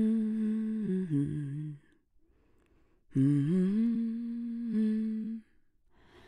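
A person humming two long held notes. The first drops lower about a second in and stops just before two seconds; the second slides up at its start and holds steady until about five and a half seconds in.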